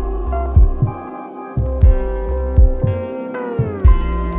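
Slowed, reverb-soaked R&B instrumental: sustained synth chords over deep bass kick drums. Near the end the held chord tones slide downward in pitch.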